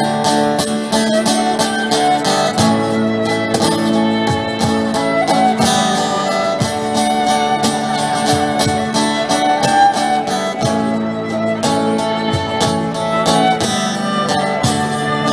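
Live folk band playing an instrumental passage between sung verses: strummed acoustic guitar keeping a steady rhythm under a violin line.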